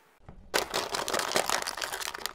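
Thin clear plastic cups cracking and crunching under a rolling car tyre: a dense run of sharp crackles starting about half a second in, over a low rumble of the tyre.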